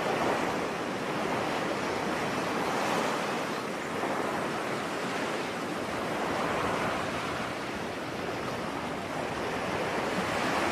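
Ocean surf: a steady rush of waves that swells and eases every few seconds.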